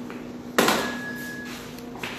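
A single sharp clack about half a second in that rings briefly as it dies away: a hard object knocked or set down on a hard surface. A steady low hum runs underneath.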